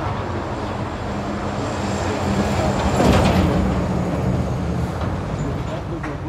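Road traffic: a heavy vehicle passing on the nearby road, its engine drone swelling to a peak about halfway through and then fading.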